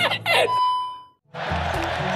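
Laughter and commentary break off, and a single bell-like ding rings and fades within about half a second. A moment of dead silence follows, then background music and stadium crowd noise come in.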